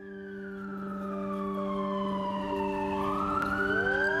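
Song intro with a siren wailing, sweeping slowly down in pitch over about three seconds and then back up, over a low sustained chord that swells in.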